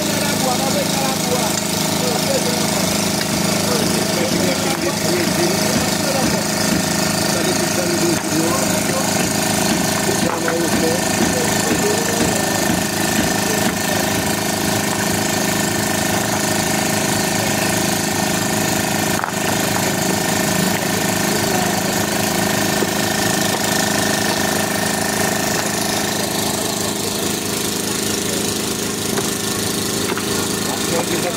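An engine running steadily at constant speed, with people's voices in the background.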